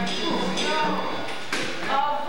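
Indistinct chatter of several people talking over each other in a rehearsal hall, with a steady low hum underneath and one sharp tap about one and a half seconds in.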